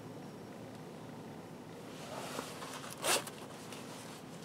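Quiet room tone, with a soft rustle building about two seconds in and one brief, sharper rustle of clothing about three seconds in, as a hand moves away from the code reader.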